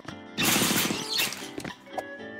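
Cartoon scene-transition sound effect: a loud noisy burst with musical tones comes in about half a second in and fades out, with a short sharp hit near the end.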